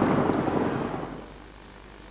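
A rushing, rumbling background noise that fades out over the first second and a half, leaving only faint low hiss.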